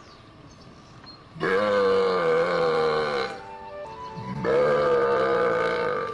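Two long, low, moo-like calls, each about two seconds long with a slightly wavering pitch and a second's gap between them, loud and close by: cattle calling made to draw the herd over. Faint background music runs underneath.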